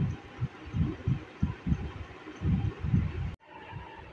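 A run of irregular low thumps and rumbles from the phone being handled close to the microphone, over a faint hiss, cut off abruptly about three and a half seconds in.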